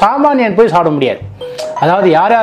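A man talks in Tamil and pauses after about a second; in the pause a short, quiet two-note chime sounds, two steady tones close together in pitch.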